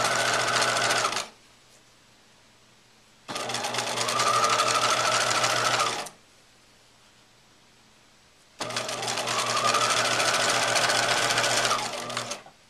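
Sewing machine stitching rickrack onto a fabric pocket in three runs. The first stops about a second in, the second runs from about three to six seconds, and the third starts near the end. In each run the motor's whine rises slightly as it speeds up, over a rapid even beat of needle strokes.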